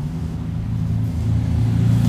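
A steady low rumble, growing a little louder in the second half.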